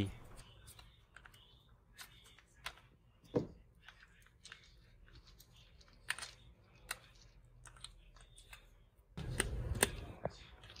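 Plastic screw plugs (cell vent caps) on a 12 V VRLA battery being unscrewed and lifted out by a gloved hand: faint scattered clicks and scrapes, one sharper click about three and a half seconds in. Near the end there is a louder burst of rustling handling noise.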